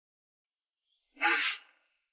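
A single short, breathy burst of sound from a person, about half a second long, a little past the middle; it has the character of a sneeze or sharp exhale.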